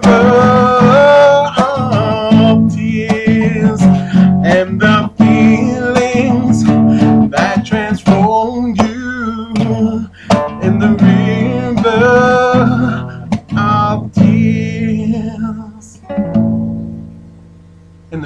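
A man singing a slow song to his own strummed acoustic guitar. Near the end the singing stops and the last chord rings out and fades.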